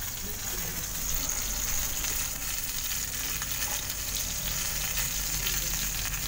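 Chicken and meat pieces sizzling steadily in a covered double-sided grill pan on a gas burner, browned and nearly done.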